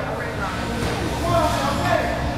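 Chatter of voices over electric RC touring cars racing on a carpet track; the voices are the louder part.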